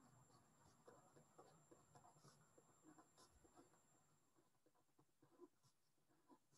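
Very faint pen on paper: small scratches and taps of handwriting, scattered through the first few seconds, with one more near the end.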